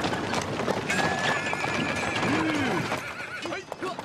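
Horses neighing and hooves clattering over shouting and a run of sharp knocks and clashes, easing off near the end.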